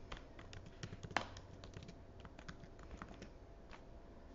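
Computer keyboard being typed on: a faint run of irregular key clicks, one sharper click about a second in.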